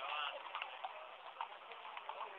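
Shod horse hooves clopping on stone paving, a string of sharp, irregular clicks, over the murmur of a crowd with a brief voice at the start.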